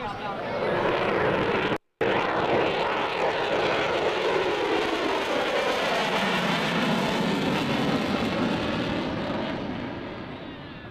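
F-14 Tomcat fighter jet making a low pass in afterburner: loud jet noise that swells in the first second, holds with a sweeping shift in pitch as the jet passes, and begins to fade near the end. The audio drops out for a split second about two seconds in.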